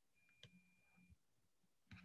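Near silence on a video-call audio line, with a faint click about half a second in.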